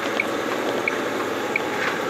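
Steady running noise inside a truck cab, with faint short high beeps about every two-thirds of a second.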